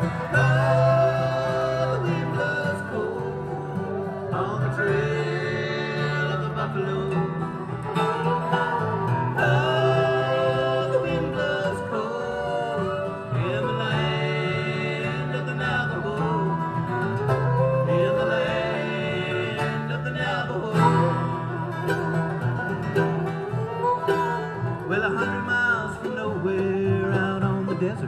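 Acoustic bluegrass band playing an instrumental introduction: mandolin, flat-top acoustic guitar and upright bass, with a lead melody line that slides and bends in pitch over a steady bass line.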